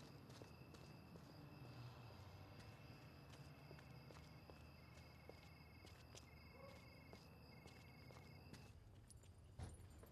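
Near-silent night ambience: steady high-pitched insect trilling, in short pulsed runs through the middle, with faint footsteps.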